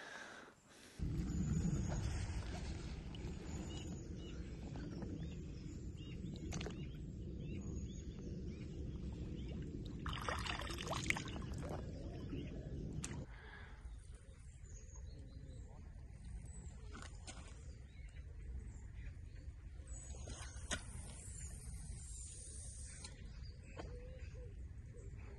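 Wind rumbling on the microphone through the first half, with a brief splash of water just past the middle as a carp is slipped back into the lake; the rumble then drops away, leaving quieter ambience with faint bird chirps.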